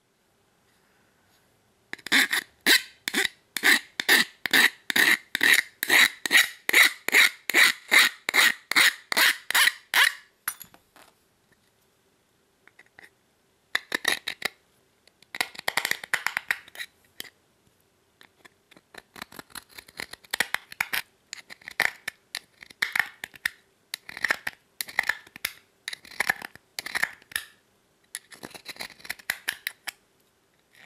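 A hooked-blade hand deburring tool scraping along the cut edge of an aluminum panel, shaving off laser-cutting slag and burr. A quick, even run of strokes about three a second lasts some eight seconds, then slower, irregular strokes follow.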